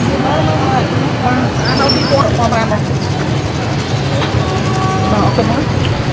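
Busy street ambience: several people talking over one another at a market stall, with a steady rumble of traffic underneath.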